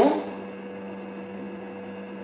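Steady electrical hum with a faint background hiss, a low tone with a higher one above it, unchanging throughout. The last word of a woman's speech trails off at the very start.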